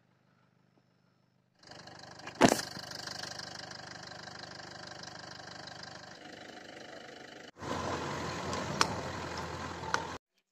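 A car's engine running as it drives slowly along a rough dirt road. It comes in after about a second and a half with a sharp click just after it starts, then grows suddenly louder and rougher about two-thirds of the way through.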